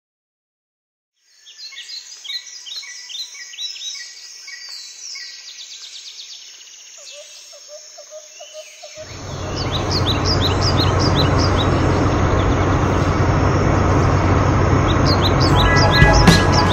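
Birds chirping after a second of silence. About nine seconds in, an off-road buggy's engine rumble starts and grows loud, with the birds still chirping over it.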